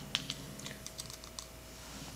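A small plastic measuring spoon clicking lightly against a glass prep dish and a plastic mixing bowl while scooping and tipping in sea salt: a run of faint, irregular clicks.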